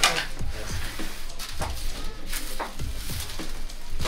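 A few short knocks and scrapes of a long wooden peel against the floor of a stone oven as a baked katmer is slid out.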